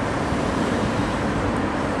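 Steady background noise, an even hiss and hum of room tone with no distinct event.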